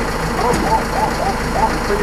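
Delivery truck's engine idling steadily, with a string of about five short, high-pitched calls that rise and fall over it from about half a second in.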